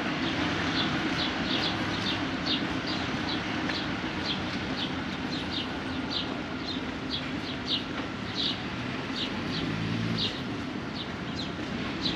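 Small birds chirping over a steady hum of street traffic, the chirps short and high, coming irregularly about twice a second. A vehicle engine passes near the end.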